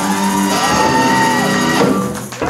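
Live rock band playing the closing bars of a song: electric guitars, bass and drums, with a long high note held for about a second that bends up at its start and falls away at its end.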